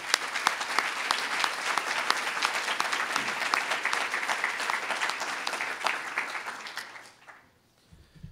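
Audience applauding, with the man at the lectern clapping along. The applause dies away about seven seconds in.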